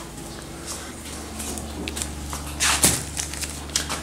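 Plastic packaging of a diaper pack rustling and crinkling as it is handled and set down, with a louder crinkle a little before three seconds in and a few light clicks, over a steady low hum.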